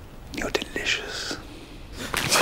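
A man whispering a few short words.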